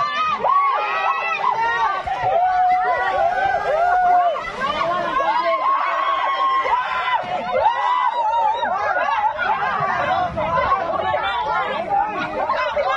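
A group of people shouting and cheering at once, many excited voices overlapping without a break.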